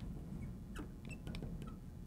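Marker pen writing on a glass lightboard: faint, scattered short squeaks and small taps of the felt tip on the glass.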